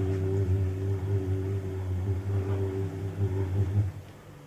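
A deep voice holds one long, low chanted note with steady overtones, cutting off just before the end.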